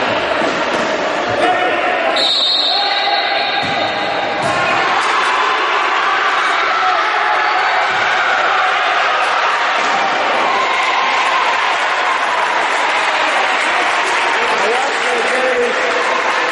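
Futsal match in a reverberant sports hall: players and spectators calling out over a steady hall din, with the ball being kicked and bouncing on the hard court floor. A short high whistle blast sounds about two seconds in.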